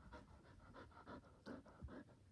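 Border Collie panting quickly and faintly, about five short breaths a second, with a soft knock about one and a half seconds in.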